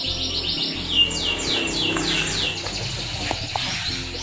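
Caged Yorkshire canary singing: a fast run of repeated high notes, then about a second in a series of quick falling whistles, about four a second, growing fainter in the second half.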